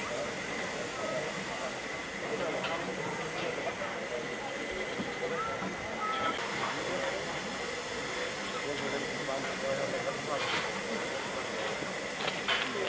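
Narrow-gauge steam locomotive standing under steam, hissing steadily, with a few faint brief noises over the hiss.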